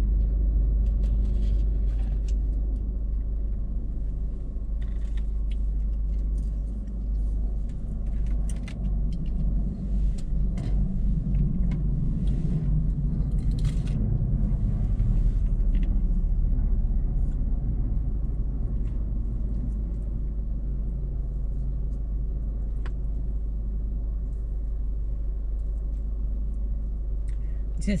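Steady low rumble inside a car cabin, with scattered clicks and rustles of items being handled, busiest in the first half.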